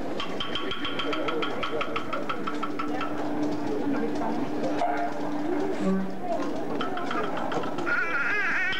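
A man singing a traditional Aboriginal song of thanks to the elders into a microphone, holding a long note in the middle, over rapid, evenly spaced tapping.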